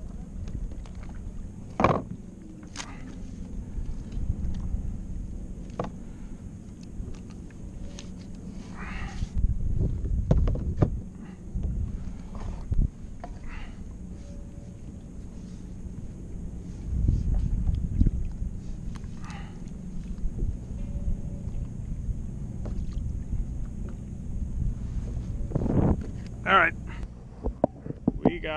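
Ocean swell water sloshing against a plastic kayak hull, over a steady low rumble of wind on the microphone, with scattered sharp knocks and clicks.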